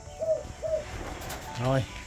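A dove cooing: two short coos in the first second.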